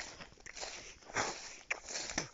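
A few separate footsteps, short crunching scuffs on the ground.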